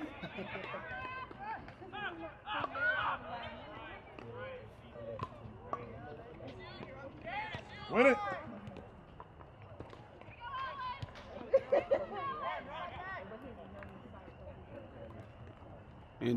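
Scattered shouts and calls from soccer players and people on the sideline, too distant to make out, with one louder call about halfway through.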